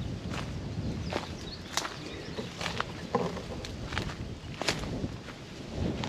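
Footsteps on dry leaf litter and twigs, a string of irregular steps with sharp snaps.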